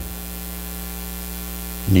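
Steady electrical mains hum with a layer of hiss from the microphone and sound system, a constant buzzing drone that does not change.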